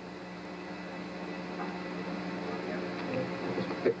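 A steady low hum under faint, indistinct voices from the press room audience, the murmur growing a little louder toward the end.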